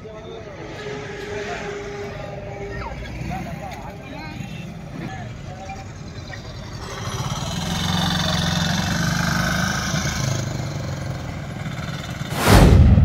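Highway roadside sound: indistinct voices of bystanders, then a heavy vehicle's engine and tyres passing, loudest from about seven to ten seconds in.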